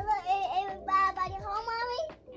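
A young child singing in a high voice without words: a few held, wavering notes with a short break between them.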